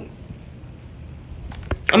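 A short pause with faint room noise, then three quick clicks near the end before a woman's voice resumes.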